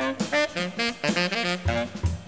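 Jazz tenor saxophone playing a quick run of short, separate notes, with drums behind it and a low drum thump near the end.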